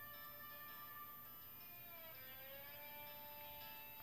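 Faint instrumental backing music between sung lines: a held chord whose notes glide and settle into a new chord about halfway through.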